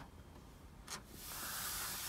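Backing film being peeled off the adhesive side of a tempered glass screen protector. There is a short crackle about a second in, then a soft steady hiss as the liner comes away.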